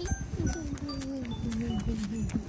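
A long, drawn-out vocal moan that falls steadily in pitch over about a second and a half, over a low rumbling noise, with faint tinkling notes above.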